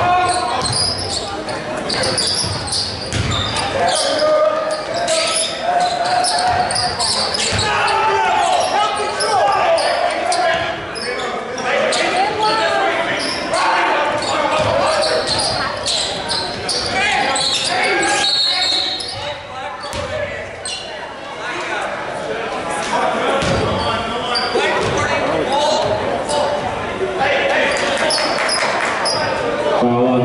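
Basketball being dribbled on a hardwood gym floor during live play, with players and spectators calling out and talking, all ringing in the hall.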